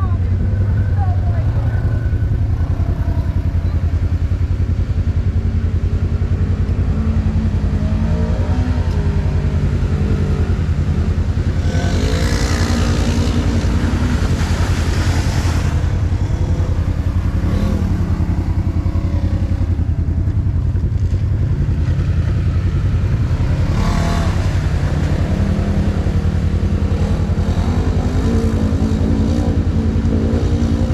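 Side-by-side UTV engine idling steadily, with the pitch of engines wavering as machines rev. Near the middle comes a louder rush of noise lasting a few seconds, with a shorter one later.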